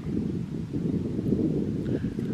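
Wind buffeting an outdoor microphone: a steady low rumble with no distinct events.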